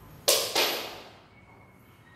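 Two sharp thuds about a quarter second apart, the second trailing off over about a second.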